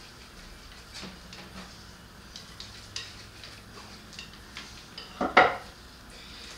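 Glass jug of gasoline and water being shaken, with faint sloshing and a few light clinks, then a loud knock about five seconds in as the jug is set down on a wooden stool.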